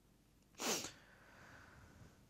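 A single short, breathy burst of breath and nose noise from the man, about half a second in, lasting about a third of a second, between stretches of near silence.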